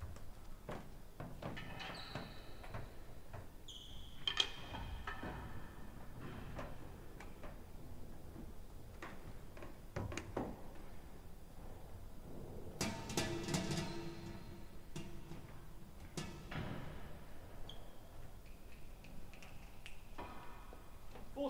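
Scattered knocks and thuds of solid real tennis balls and footsteps on the court floor between points, with a few short high squeaks and a busier patch of knocks about two-thirds of the way through.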